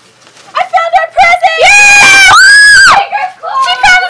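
Children shrieking with excitement: high-pitched excited cries start about half a second in, then two long, very high screams in the middle, the second higher than the first.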